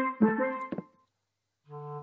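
Steel drum played in a quick run of struck, ringing notes that stops just under a second in; a new held tone begins near the end.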